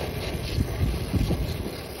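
Wind buffeting the microphone in uneven low gusts, over the steady hiss of a brazing torch flame heating a copper refrigerant line joint at a liquid-line filter drier.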